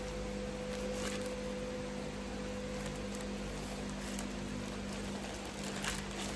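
Steady low hum with a few faint rustles and clicks, as plastic mailer packaging is handled.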